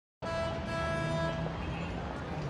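Busy city street traffic noise, starting abruptly just after the opening, with sustained steady tones above it.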